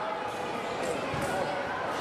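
Indistinct voices echoing in a large indoor sports hall, with a single dull thump a little past a second in.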